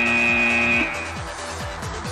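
Match-end buzzer: a steady buzzing tone that cuts off suddenly about a second in, over background electronic music with a steady beat.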